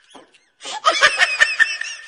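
Hearty human laughter breaks out about half a second in, in quick repeated bursts.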